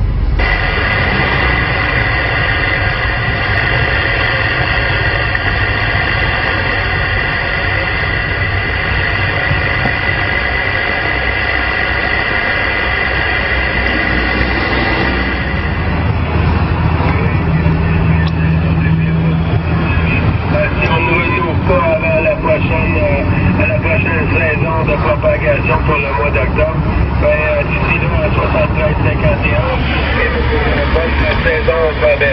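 27 MHz CB radio receiver output: band noise with several steady whistling tones through the first half. About halfway through the whistles drop away to static, and from about two-thirds of the way in weak, garbled voices of distant stations come through the noise.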